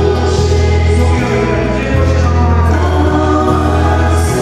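Christian worship song: a group of voices singing together over sustained chords with a deep, held bass that shifts to a new note every second or so.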